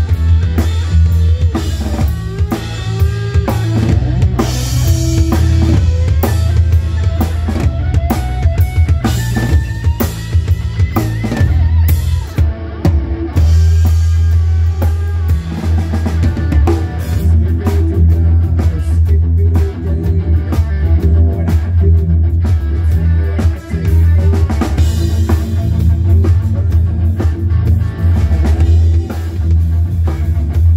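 Live rock band playing, with a drum kit heard close up: kick drum, snare and cymbals over bass and electric guitar, and a gliding lead line in the first half.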